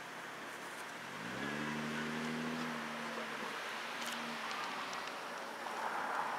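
A motor vehicle engine rising in pitch about a second in, holding steady, then fading away by about four and a half seconds.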